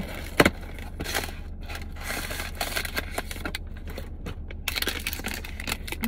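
Cardboard ice cream box being opened and a plastic-wrapped ice cream bar pulled out: irregular rustling, scraping and crinkling, with a sharp snap about half a second in.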